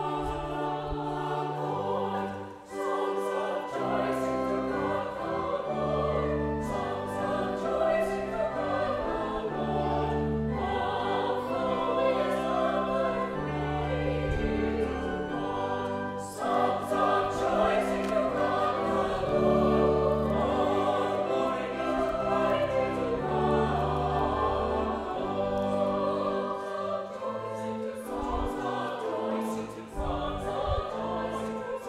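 Church choir of mixed voices singing an anthem, accompanied by pipe organ holding long steady bass notes under the voices.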